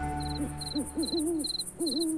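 Night-time ambience: an owl hooting in a run of short rising-and-falling hoots over crickets chirping in a steady high pulse, about two to three chirps a second, as music fades out at the start.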